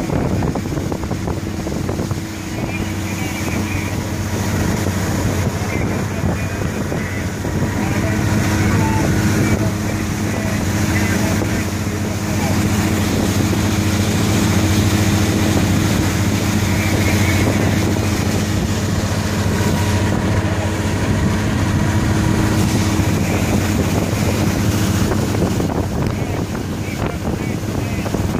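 Motorboat outboard engine running steadily at planing speed, its drone holding an even pitch, with wind noise on the microphone.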